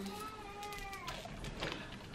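A faint, high-pitched, drawn-out vocal call lasting about a second, then fading out.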